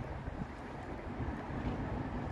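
Wind buffeting a handheld phone microphone outdoors: a steady low rumble with no distinct events.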